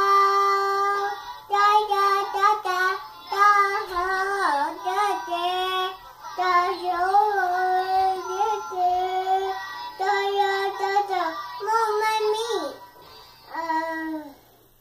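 Toddler girl singing long held notes with wavering pitch, in phrases broken by short pauses.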